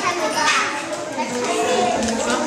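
Many children talking and calling out at once, a steady babble of high young voices.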